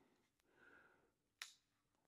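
Near silence: room tone, with a single faint click about one and a half seconds in.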